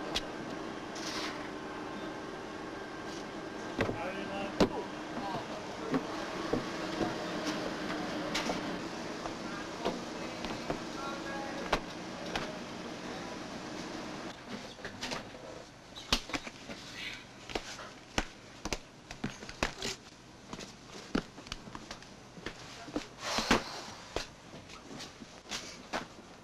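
Dockside and shipboard ambience: a steady machinery hum with scattered knocks. About fourteen seconds in the hum falls away, leaving sharp, irregular knocks and clanks of footsteps and metal on a ship's deck.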